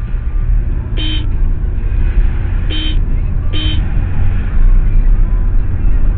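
Three short car-horn toots, about a second in, near three seconds and again just after, over the steady low rumble of a car driving, heard from inside the cabin.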